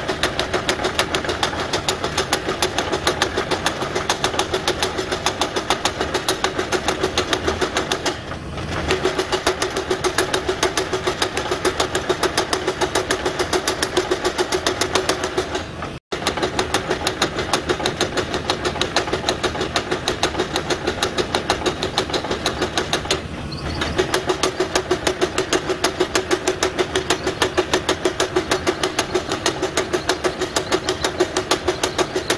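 Power hammer pounding a red-hot steel knife blank forged from old railway rail, several blows a second over a steady machine hum. The blows stop briefly twice.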